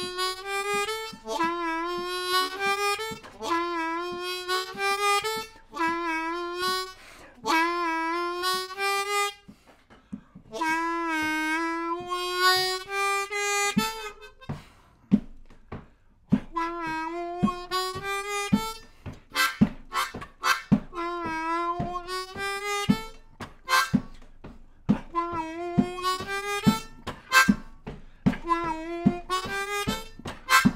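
G Hohner Marine Band diatonic harmonica played in third position in A minor: short phrases of bent draw notes on holes 3 and 4 in the bottom octave, the notes sliding in pitch, repeated several times with brief pauses. From about halfway through, sharp clicks come roughly twice a second under the playing.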